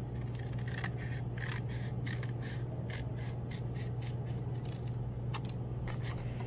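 Scissors cutting through folded construction paper in a run of short snips, about three a second, starting about a second in and stopping near the end.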